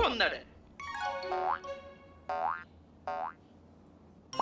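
Cartoon boing sound effects: a wobbly springy tone fading out at the start, then three short pitched tones about a second apart, each ending in a quick upward glide.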